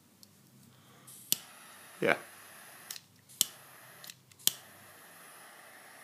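S.T. Dupont MaxiJet jet-flame butane lighter being fired: several sharp clicks of its ignition and a steady hiss of the jet flame from about a second in, the hiss briefly cutting out and returning a few times.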